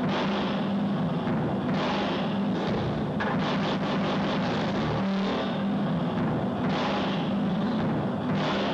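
Loud, dense experimental electronic music played live: a steady low drone under swelling washes of noise, with a passage of fast fine clicks about three seconds in.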